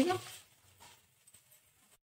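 A spoken word ending about half a second in, then near silence with a couple of faint ticks.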